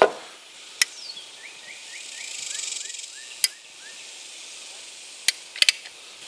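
A sharp knock of wood at the start, then a handful of separate sharp clicks, the last two in quick succession near the end, from a caulk gun being worked to lay a fat bead of construction adhesive into a tongue-and-groove roof-deck board.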